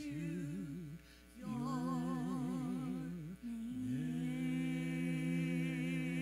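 A woman singing slow, held worship notes with a wide vibrato into a microphone, with a brief break about a second in and a swoop up into a long sustained note later on.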